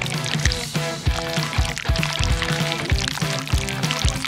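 Background music with a steady beat, over thick honey jelly pouring from a squeezed plastic bottle onto chocolate cake.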